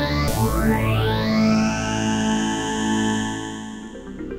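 Analogue synthesizer tone through an envelope-controlled phaser: a new note starts just after the beginning, its phasing notches sweep steeply upward and then glide slowly back down as the envelope decays. The note fades away near the end.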